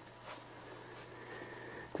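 A quiet pause holding only a faint steady low hum and light background noise.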